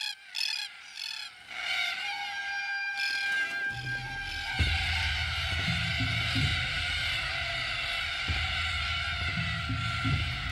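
Harsh repeated calls of red-tailed black cockatoos, clearest in the first second or so, under background music of held notes that is joined by a steady low bass about four seconds in.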